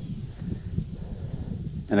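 Uneven low rumble of wind buffeting the microphone, with a faint steady high tone above it.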